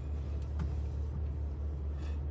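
Car engine running, heard from inside the cabin as a steady low hum, with a faint click about half a second in.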